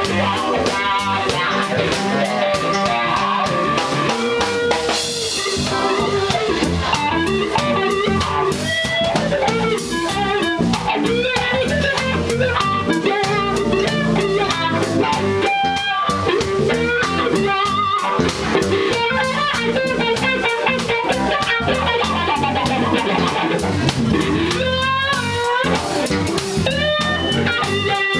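Live blues band playing an instrumental break: a Stratocaster-style electric guitar solos with bent notes over keyboard and drum kit.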